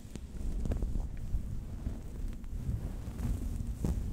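Soft fabric rubbed and scrunched against the microphone: a low, muffled rumble with a few small crackles and clicks scattered through it.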